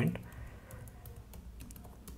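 Computer keyboard being typed on: an irregular run of light keystrokes as a line of code is entered.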